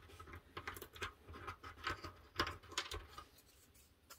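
Small pieces of laser-cut plywood being handled and fitted together: light scratches and a few soft wooden clicks, stopping about three seconds in.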